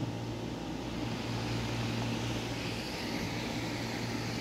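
Steady low mechanical hum of background machinery, holding an even level throughout.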